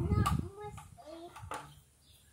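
A young child's brief wordless vocal sounds, over a low rumble in the first half second, then fading.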